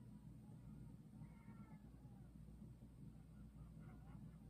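Near silence: low, steady room hum, with a faint high-pitched sound about a second in and again near the end.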